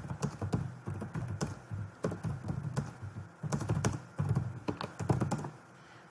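Typing on a computer keyboard: quick, irregular runs of key clicks that stop shortly before the end.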